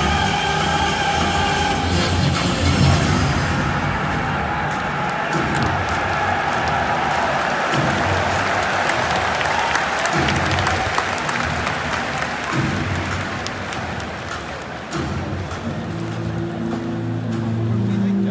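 Stadium PA music ending in the first few seconds, then a large stadium crowd applauding and cheering, with deep pulses from the PA underneath. A low sustained PA tone comes in near the end.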